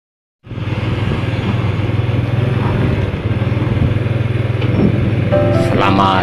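Motorcycle engine and wind noise while riding along a road, a steady low rumble that starts about half a second in.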